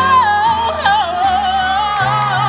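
A female soloist singing into a microphone, a bending run with wide vibrato, over low sustained backing notes.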